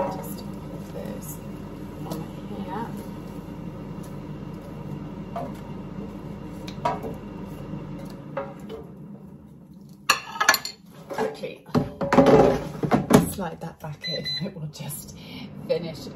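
Dual-basket air fryer humming steadily with a few light clinks of tongs against its basket; the hum drops away about halfway. Near the end comes a loud run of clattering knocks from the metal basket and tongs being handled.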